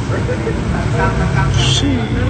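Indistinct voices over a steady low rumble, with a short high hiss near the end.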